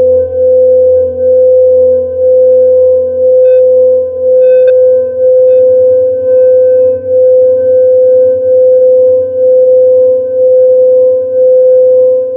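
Tibetan singing bowl sung by rubbing a mallet around its rim: one sustained ringing tone with a lower partial under it, swelling and dipping about once a second as the mallet circles. A couple of faint ticks come near the middle.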